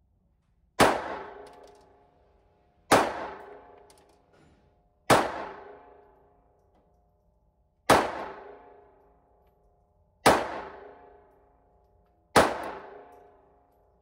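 Llama Especial .380 ACP pistol fired six times in slow, evenly spaced shots about two to two and a half seconds apart. Each shot is a sharp crack with a ringing tail that dies away over about a second in the echo of an indoor range.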